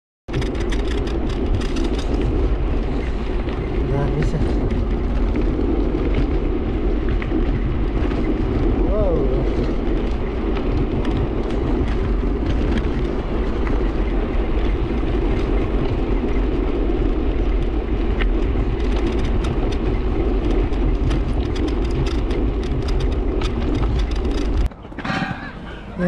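Steady wind buffeting and road rumble on an action camera's microphone while riding an e-bike along a paved path. Near the end it cuts off abruptly and children's voices take over.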